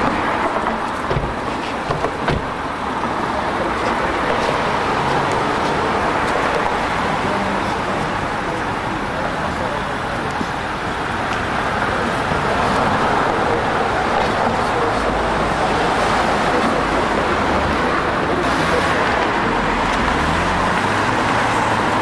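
Steady street traffic noise with a car engine close by, a few sharp clicks in the first seconds; the filmed car pulls away near the end.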